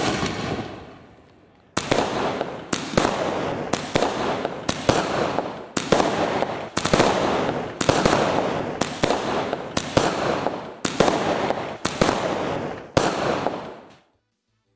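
Multi-shot aerial fireworks cake firing. There is a sudden rush of noise at ignition that fades, then from about two seconds in the shots go off roughly once a second, each sharp report trailing off as the shell bursts.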